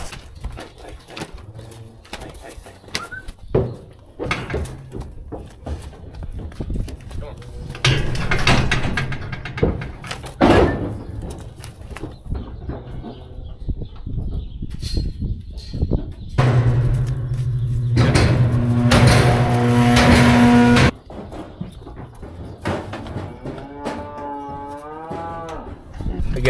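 Black Angus cattle mooing in a pen, with one long, loud moo lasting several seconds about two-thirds of the way through and a wavering call near the end.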